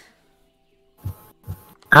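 Faint, steady background music under a mostly quiet stretch, broken by two brief bursts of noise. Near the end a voice says "Ow" with a falling pitch.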